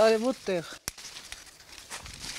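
A voice speaking briefly, a single sharp click just under a second in, then faint rustling of persimmon leaves and branches as fruit is picked by hand from the tree.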